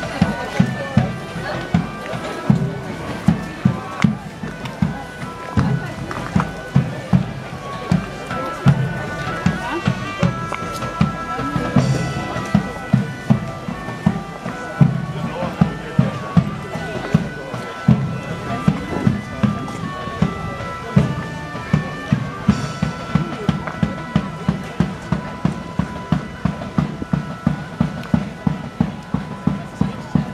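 Bagpipe music with a held drone under a moving melody, over a steady low thumping beat, with voices of people around.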